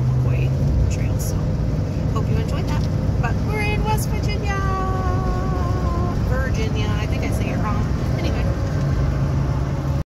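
Steady road and engine noise inside the cabin of a moving car, with a low hum that drops out about a second in and returns near the end.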